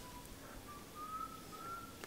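A faint, thin whistle on a single high note that starts under a second in, rises slightly in small steps and breaks off a few times.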